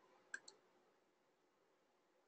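Two quick, faint computer mouse clicks about a third of a second in, the second softer.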